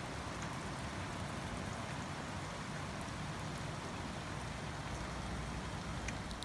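Steady rain falling, an even hiss without any thunder claps.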